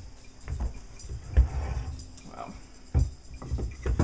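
Steel axe being set down and shifted on a wooden log on a workbench: a few dull knocks, the loudest about a second and a half in.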